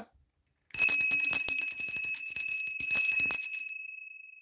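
A bell ringing as the auction's signal that the bid has reached a new level, about a second in: a shimmering, jangling ring over steady high tones, fading near the end while one tone rings on.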